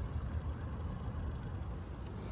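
Outdoor city ambience: a steady low rumble with no distinct events.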